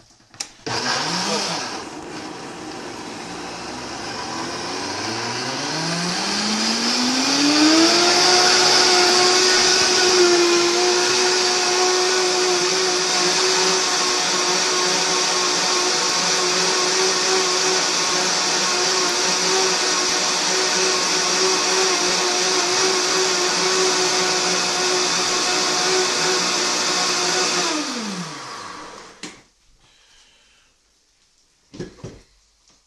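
High-powered countertop blender pureeing cooked cauliflower with cream and butter. After a short first burst, the motor speeds up over a few seconds to a steady high-speed whir, runs evenly for about twenty seconds, then winds down and stops near the end.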